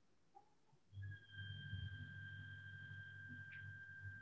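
Faint low electrical hum with a steady high-pitched whine, starting about a second in: background noise from a video-call participant's open microphone.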